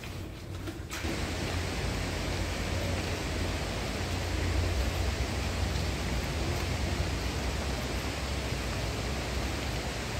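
Steady rushing of river water with a deep rumble underneath, starting abruptly about a second in.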